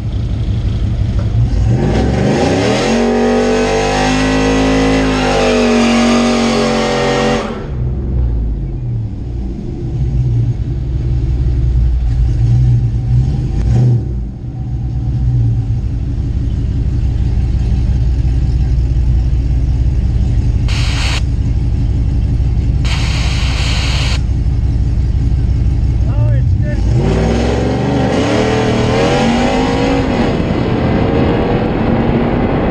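Cammed Hemi V8 in a nitrous-equipped Ram pickup: revved up and held for several seconds, then settling to a low, choppy idle. Two short hisses come at about 21 and 23–24 seconds. Near the end the engine revs up hard as the truck launches down the drag strip.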